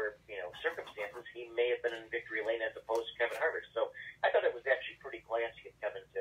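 Only speech: a man talking without a break, with the thin, narrow sound of a telephone line.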